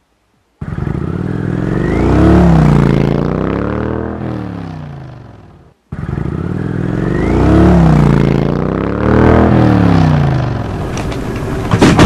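A motor vehicle engine revving up and down, the same recording played twice in a row, with a burst of sharp knocks near the end.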